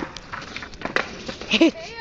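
A couple of sharp clicks, then a short yelp from a young voice near the end that rises and falls in pitch.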